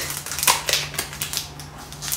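Cardboard perfume packaging being handled and slid apart by hand: a quick run of small scrapes, clicks and rustles.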